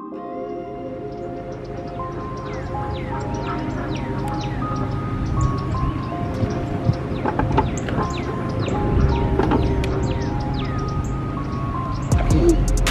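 Background music with a steady bass and a stepped melody, starting at the opening and building slightly, with many short falling sweeps in the upper range.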